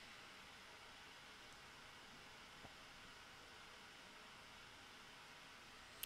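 Near silence: a faint steady hiss of room tone, with one tiny click about two and a half seconds in.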